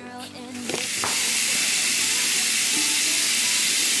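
A steady hiss that sets in within the first second and then holds level.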